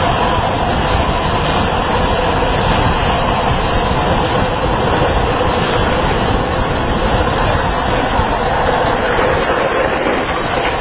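Steady, loud rushing of wind over the microphone, mixed with the hum of small wheels rolling fast on asphalt.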